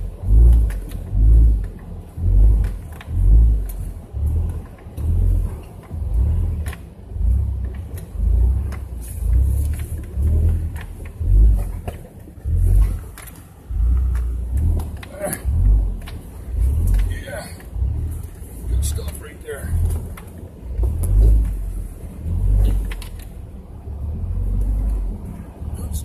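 Inside the cab of a 4x4 crawling over a rocky off-road trail: a low vehicle rumble with deep thumps about once a second as the truck rocks and jolts over the rocks.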